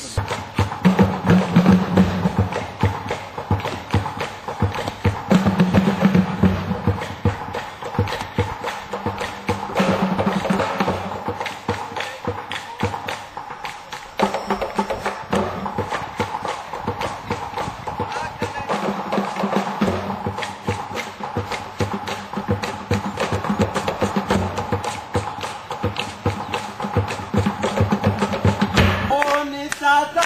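Music with a busy, steady percussive beat over a sustained melody.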